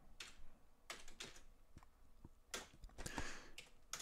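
Computer keyboard being typed on: faint, scattered keystrokes with short pauses between them.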